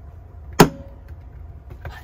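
A single sharp metallic clack about half a second in, with a brief ring: the steel facing of a magnetic knife bar snapping against its mounting plate as it is pressed into place. A steady low rumble runs underneath.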